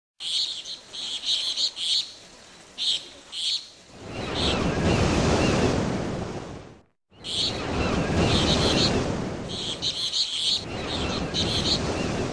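Small birds chirping in short repeated bursts over waves washing in, the surf swelling louder then fading. Just before the middle, the sound cuts off abruptly to silence for a moment, then the same birds-and-surf mix starts again.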